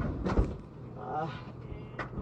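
A dull low thump, like a phone being bumped or handled, then a brief stretch of muffled voices over a steady low hum.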